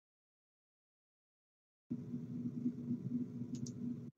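Dead silence, then about two seconds in a voice-chat microphone opens onto a steady low hum of room noise. Two short faint clicks come near the end.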